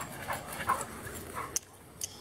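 Dogs panting as they run close past, a few short breaths that drop away about a second and a half in.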